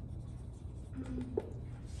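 Marker writing a word on a whiteboard: faint, short scratchy strokes over a low steady room hum.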